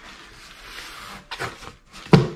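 Cardboard box flaps being pulled open and rustling against each other, with a few short scuffs about a second and a half in.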